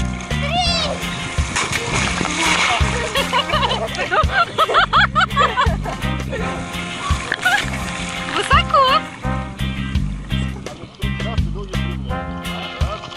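Background music with a steady beat, over water splashing as people clamber about in the sea.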